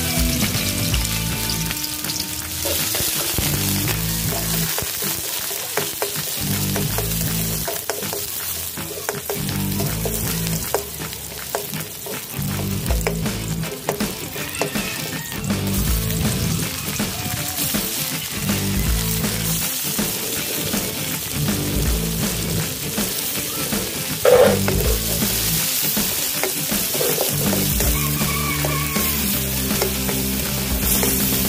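Onion, garlic, tomato and bell pepper sizzling in hot oil in an aluminium wok, with a spatula scraping and stirring them. There is one brief louder knock about 24 seconds in, and background music plays under it all.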